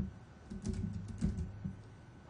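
Computer keyboard being typed on: a short run of keystrokes from about half a second to a second and a half in, entering a search term.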